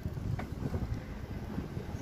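Wind buffeting the microphone of a bicycle rolling downhill: an uneven low rumble with no steady motor tone.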